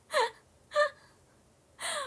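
A young woman laughing: two short breathy laughs about half a second apart, each falling in pitch, then a sharp breath in near the end.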